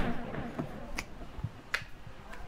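The last notes of a Fender Stratocaster electric guitar dying away, with a few sharp clicks about a second in and again near the end.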